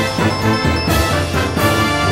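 Upbeat title theme music with a steady beat over a bass line, with strong accents about a second in and again near the end.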